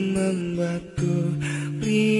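Acoustic-guitar-led pop music with plucked strings and sustained melodic notes. It drops out briefly just before a second in, then comes back strongly.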